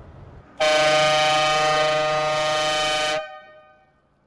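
Van horn sounding one long, steady blast of about two and a half seconds that cuts off abruptly, a mobile fish shop's call to bring villagers out to buy.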